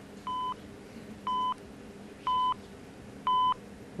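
Game-show countdown timer beeping once a second: four short, steady electronic beeps, each louder than the last over the first three, ticking off a contestant's time to answer.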